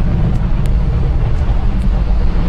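Falcon 9 first stage's nine Merlin engines during ascent: a loud, steady low rumble with a faint crackle.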